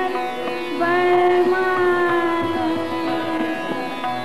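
Hindustani classical vocal performance in Raga Kedar: a female voice holds one long note over plucked swarmandal strings and tabla strokes.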